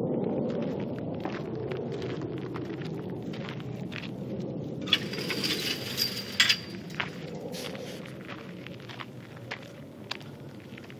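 Low roar of an F/A-18 fighter jet flying away, fading steadily, with scattered clicks. About halfway through comes a short burst of rustling and knocks from the handheld camera being swung about.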